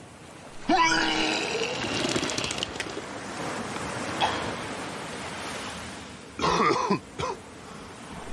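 A man vomiting: a long, rough retching heave about a second in, then shorter retches and coughs near the end, over a steady background hiss.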